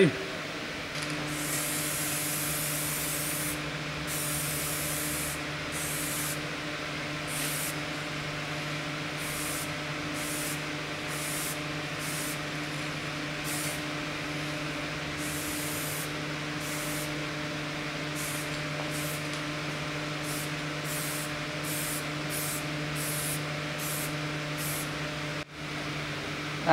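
Spray.Bike aerosol paint can spraying blue paint onto a bicycle frame in short hissing bursts, one after another, over a steady low hum.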